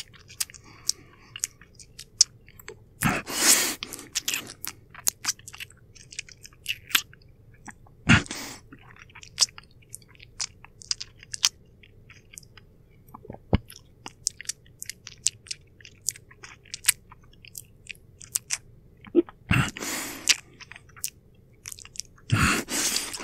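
Close-miked wet mouth sounds performed as a vampire biting and feeding at the neck: a dense run of sharp lip and tongue clicks with sucking and chewing noises. A few longer breathy draws come in, about three seconds in, about eight seconds in and near the end.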